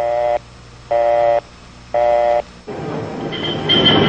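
Three evenly spaced buzzy electronic beeps, each about half a second long and a second apart. Then, from about two-thirds of the way in, a rising rumble of vehicle noise with a high squealing tone near the end.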